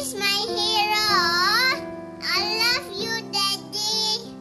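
A young boy singing over a steady instrumental accompaniment, holding a long wavering note in the first two seconds, then shorter phrases.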